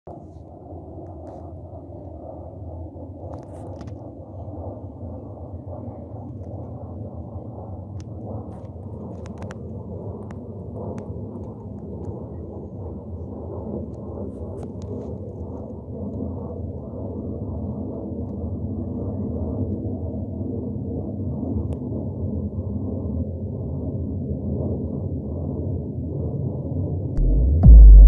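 Military jet aircraft flying low overhead, heard as a steady deep rumble that slowly grows louder. Near the end a much louder sudden sound cuts in.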